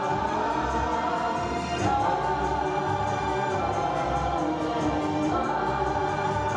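Choir singing sustained notes over instrumental accompaniment, part of an opera's score.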